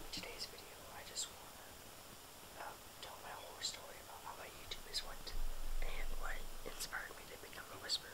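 A person whispering close to the microphone, breathy unvoiced speech with sharp hissing 's' sounds, and a brief low rumble a little past the middle.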